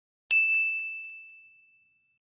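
A single bright ding sound effect, struck sharply and ringing on one high tone that fades away over about a second and a half: the bell chime of an animated subscribe-button end card.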